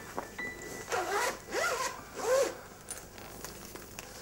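A zipper on a leather document folder being pulled shut, in three short rasping strokes.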